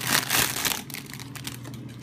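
Clear cellophane wrapping crinkling as it is pulled open by hand, loudest in the first second, then a softer rustle.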